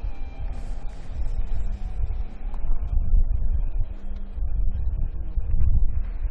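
Low, fluctuating rumble of arena background noise, with a faint hum that comes and goes.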